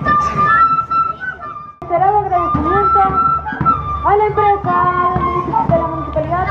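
Flute-led Andean festive dance music played live, with high steady piping notes over voices; the sound drops out abruptly just under two seconds in and then resumes.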